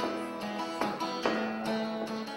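Flattop acoustic guitar strummed in a steady rhythm, a chord stroke roughly every 0.4 seconds ringing on between strokes.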